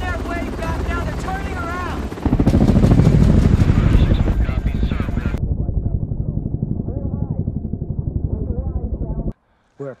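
Military helicopter rotor chop from a film soundtrack: a loud, fast, even pulsing that comes in suddenly about two seconds in, after some dialogue, and cuts off abruptly just before the end.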